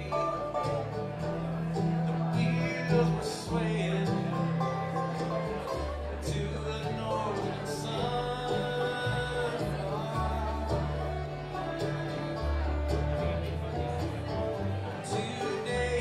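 Live bluegrass band playing: banjo, fiddle, acoustic guitar and mandolin over an upright bass that steps from note to note every second or so.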